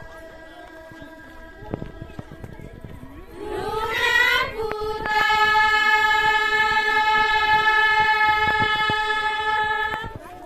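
Women's voices singing a Doti folk song, sliding up with a wavering pitch about three and a half seconds in and then holding one long, steady note to the end of the phrase; the start is quieter.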